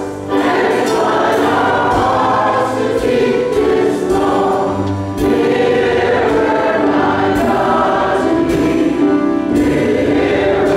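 Youth church choir singing a gospel song in full voice, holding long chords, with short breaks between phrases near the start and about five seconds in.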